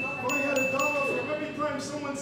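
Chime-like tinkling: a high, steady ringing tone with light, even ticks, stopping about one and a half seconds in, over lower pitched tones.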